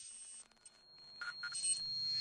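Quiet electronic intro sound effects: a short hissy burst at the start, two quick beeps a little past the middle, and a thin, steady high tone under a swell that builds in loudness.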